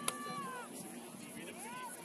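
Players' voices talking at a distance on an open field, with one sharp click just after the start.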